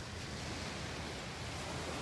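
Steady outdoor background hiss, even and unbroken, with no distinct event in it.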